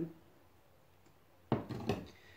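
A metal cooking pot set down on a glass hob after a quiet pause: a sudden clunk with a short clatter about one and a half seconds in.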